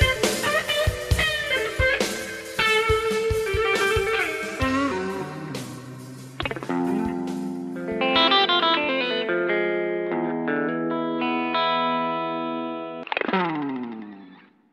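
Electric guitar ending of a pop-rock song: bending lead lines over drums at first. The drums stop about halfway, and the guitar then holds ringing chords. Near the end a last chord slides down in pitch and dies away.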